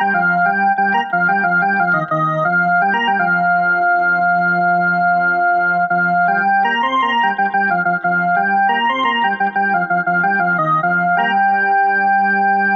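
Home electronic keyboard being played: a slow melody of held, steady notes over sustained low notes, the notes changing every second or two.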